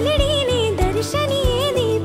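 Music: a solo voice singing an ornamented, wavering melody over a steady drum and bass beat.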